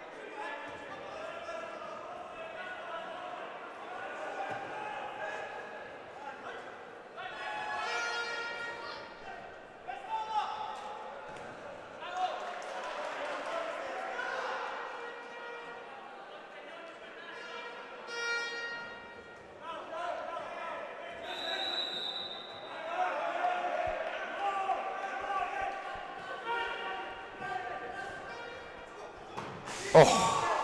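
Players' shouts and calls echoing in a large indoor hall during a five-a-side football match, with the ball being kicked on artificial turf now and then; the loudest shouts come about a quarter and about three-fifths of the way through.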